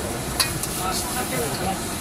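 Egg fried rice sizzling in a hot wok over a gas burner while a metal ladle stirs it, with one sharp clink of the ladle against the wok about half a second in.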